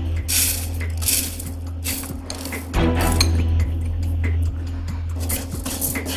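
Dry rice poured into a nonstick pan and stirred with a spatula, the grains rattling against the pan in several short rushes during the first two seconds, then scattered small clicks, over steady background music.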